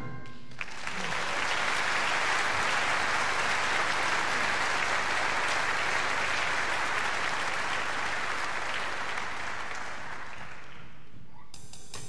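Audience applauding a song: the clapping starts about half a second in, holds steady and dies away about eleven seconds in. Near the end, sharp drum strikes start the next piece of music.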